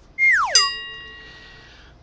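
Edited-in comedy sound effect: a quick falling whistle-like glide, then a struck bell-like chime that rings and fades over about a second and a half.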